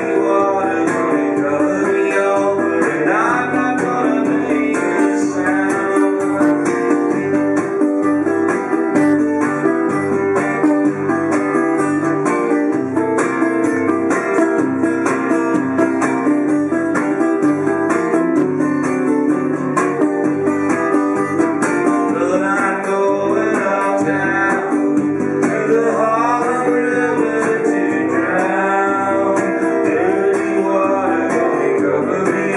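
Solo acoustic guitar playing a bluesy instrumental break over a steady, rhythmic bass line, with a few bent notes.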